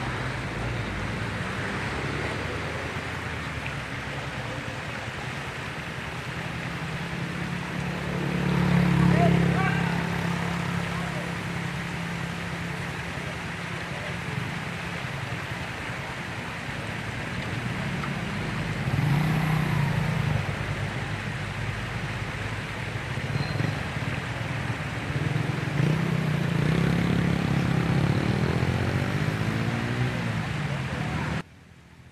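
Outdoor roadside ambience: vehicles passing on the highway, the loudest about nine seconds in, again near twenty seconds and in the last few seconds, over a steady rushing background.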